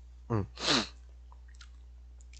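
A man's short 'eung' followed by a brief breathy vocal burst, then a faint steady low hum for the rest of the moment.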